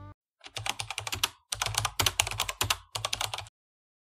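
Rapid computer-keyboard typing clicks in three quick runs with short breaks, stopping about half a second before the end: a typing sound effect for a title card.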